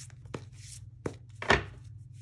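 A deck of tarot cards handled over a table: light clicks and rustling of the cards, then one louder thump about a second and a half in as the deck knocks against the tabletop.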